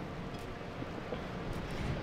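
Steady outdoor background noise, a fairly quiet even rush with no distinct events.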